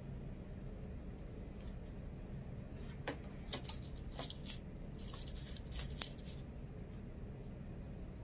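Quiet rustling and small sharp clicks from cloth and elastic being handled by hand, bunched together from about three to six and a half seconds in, over a low steady hum.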